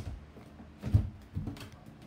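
Footsteps going down a wooden staircase: a few separate thudding steps.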